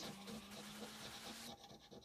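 Faint scratching of a metal spoon's edge scraping the silver coating off a paper lottery scratch card, easing off about one and a half seconds in.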